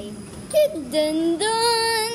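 A young girl's voice singing a few wordless notes, stepping up in pitch and ending in a long held note.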